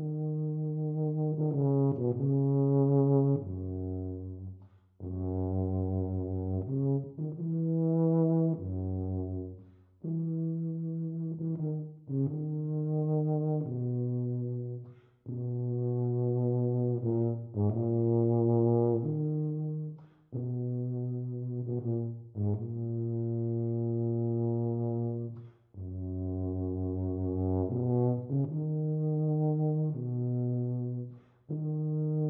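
Solo tuba playing a slow, lyrical unaccompanied melody in sustained, smoothly joined low notes. The phrases run a few seconds each, with a short break for breath between them.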